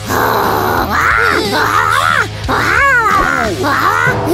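A cartoon character's wordless grunting and whining, in a run of short cries that rise and fall in pitch, over background music.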